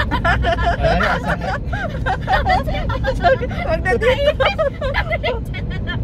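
People talking inside a moving car, over the steady low rumble of the car's road and engine noise in the cabin.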